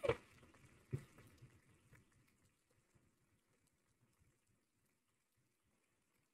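Faint applause from an audience, heard as a scattered patter of claps, with one louder knock about a second in.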